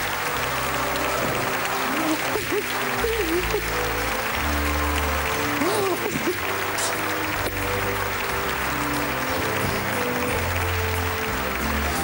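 Studio audience applauding over background music with held notes and a steady bass line, with a few brief voice exclamations mixed in.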